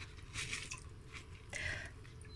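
Faint, brief rustling and small splashes as mung beans drop from the hands into a pot of water, the clearest near the end.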